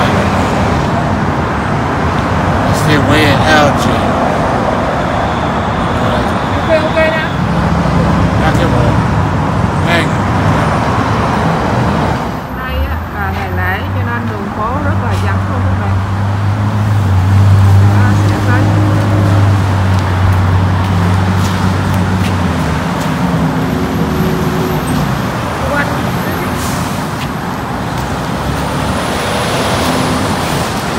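Road traffic: cars passing on a busy city road, with a low, steady engine drone from a vehicle for about ten seconds in the middle.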